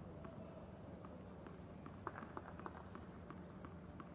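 Faint tennis-court ambience over a low hum, with a scatter of soft, short ticks from players' footsteps on the hard court.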